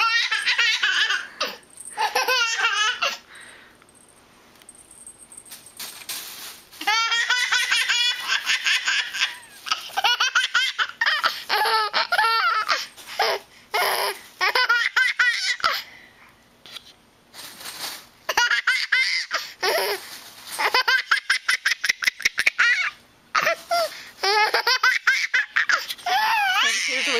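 A baby laughing hard in repeated fits of high-pitched, breathy belly laughs, each run lasting a few seconds with brief quiet pauses between them.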